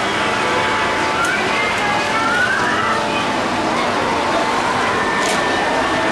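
Busy indoor hall background: a steady rushing noise with faint, faraway voices and chatter mixed in.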